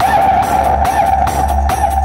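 Loud DJ music played through a tall stacked 'Power Sound' speaker-box system. It has heavy bass, a regular beat and a steady droning tone above it.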